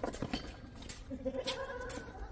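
Tennis shoes on a hard court: a few light scuffs and taps, then a drawn-out squeak in the second half as the player shifts his feet after a shot.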